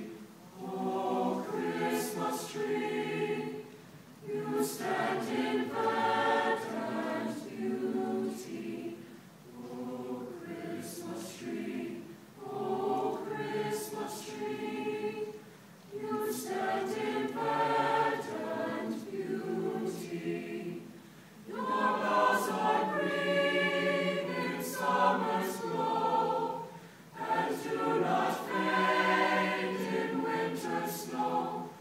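Mixed choir of male and female voices singing in phrases a few seconds long, with brief dips for breath between them and crisp consonants.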